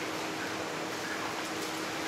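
Steady background hiss with a faint, unbroken low hum underneath; no distinct calls or knocks.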